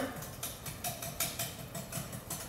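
Wire whisk beating instant pudding mix and milk in a glass batter bowl, its wires ticking against the glass in a quick, even rhythm of about five strokes a second. The mix is just starting to thicken.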